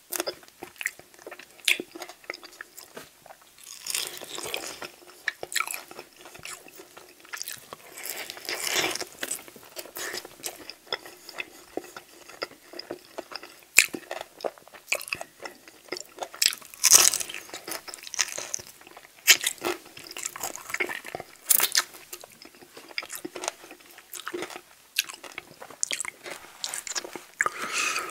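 Close-miked eating of sauced chicken wings: wet chewing, lip smacks and crunchy bites, with sticky sounds as the meat is pulled from the bone. The sounds come irregularly, with a few louder crunches.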